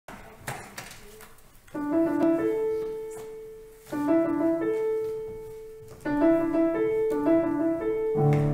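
Piano playing the introduction to a church anthem: the same short phrase begins three times, about two seconds apart, its notes ringing and fading each time. A few faint clicks come before the first phrase.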